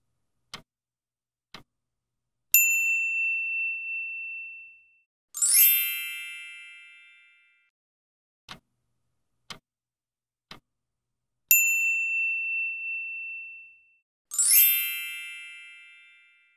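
Quiz-timer sound effects: clock ticks a second apart counting down, then a single bell ding, then a brighter, shimmering chime that fades out. The sequence runs twice: two ticks, ding, chime, then three ticks, ding, chime.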